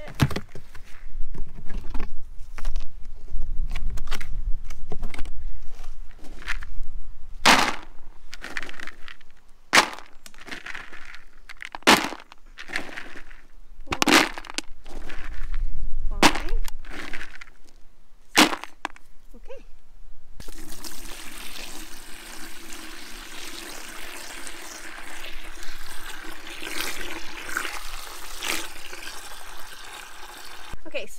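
Plastic buckets and lids knocking and clicking as they are handled, with handfuls of horse feed pellets dropped into a plastic bucket. About two-thirds of the way through, a garden hose starts running water into a plastic bucket as a steady fill.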